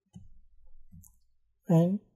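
A few faint computer mouse clicks in the first second, then one spoken word near the end.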